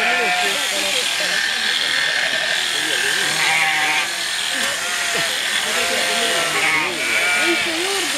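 Powered sheep shears buzzing steadily as a fleece is clipped off a sheep, with sheep bleating and people talking around it.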